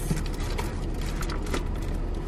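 Steady low rumble of a car's interior, with engine and road noise, and a few faint clicks.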